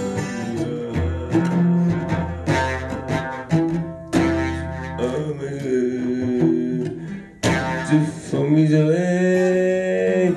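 Acoustic guitar strummed in chords, accompanying a man's singing voice that holds a long note near the end.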